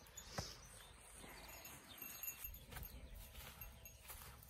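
Faint outdoor ambience, with a single light click about half a second in and a few faint short high tones later on.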